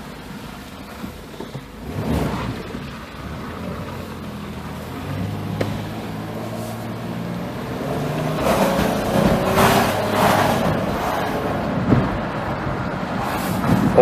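A 2005 Dodge Caravan's 3.8-litre V6 running under way, heard from inside the cabin, growing louder with engine and road noise past the middle as the minivan gathers speed. The automatic transmission is shifting normally again rather than sitting in second-gear limp mode, with a new output speed sensor fitted.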